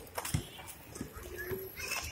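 Quad roller skate wheels rolling slowly over rough, cracked concrete, with scattered light clicks and a low rumble; faint voices in the background.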